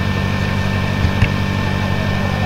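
Steady low hum with an even hiss of background noise, and two faint short clicks a little after a second in.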